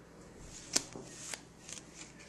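Bicycle playing cards handled in the hands: the fanned aces are slid and squared together, with a few light clicks of card edges, the sharpest about three-quarters of a second in and another just past a second.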